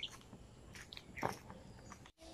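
Faint chewing: a few soft mouth clicks, the clearest about a second and a quarter in.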